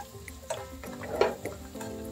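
A slotted spatula stirring and scraping a bubbling butter-garlic sauce in a nonstick frying pan, with a couple of short scrapes about half a second and a second in, over steady background music.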